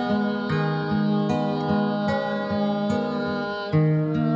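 Music: acoustic guitar plucking a slow melody over sustained low notes, the notes changing every second or so and swelling louder just before the end.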